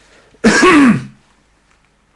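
A man clearing his throat once, loudly, about half a second in.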